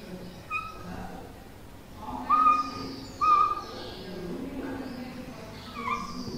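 Whiteboard marker squeaking as lines are drawn on the board: short steady-pitched squeals of about half a second each, a faint one early, two loud ones around two and three seconds in, and another just before the end.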